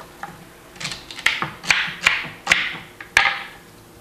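Celery pieces dropped and pushed into a blender jar: a string of five or six light knocks, each with a short rustle, through the middle seconds. The blender is not running.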